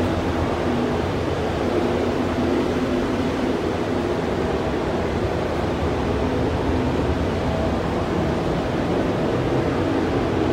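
Steady rushing air noise of a spray booth's ventilation fans, constant and heavy in the low end, with a faint hum.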